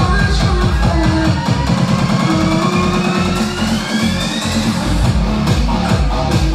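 Vinahouse-style Vietnamese dance remix with a heavy, pounding bass beat. A rising synth sweep builds for about three seconds while the bass thins out, then the full beat comes back in near the end.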